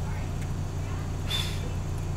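Steady low hum of room background noise, with one short hiss about one and a half seconds in.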